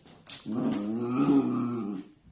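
Dachshund growling during rough play with another dachshund: one long growl of about a second and a half, starting about half a second in, after a couple of short sharp clicks.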